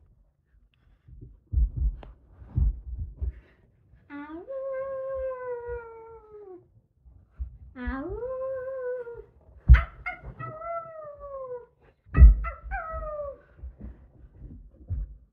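A young girl imitating a wolf howl, four long calls, each sliding up and then falling slowly. Dull thumps come before and between the calls.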